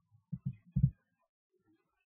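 Three short, dull, low thumps in quick succession within the first second.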